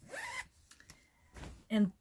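Zipper on a quilted fabric bag being pulled, a short zip that rises in pitch, then another brief rasp about a second and a half in.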